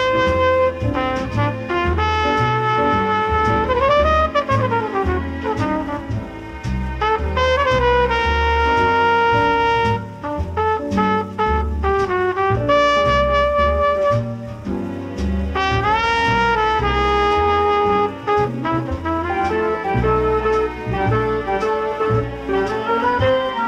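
Jazz trumpet playing a slow melody over an orchestra, with bass notes underneath. About four seconds in, one note bends up and back down.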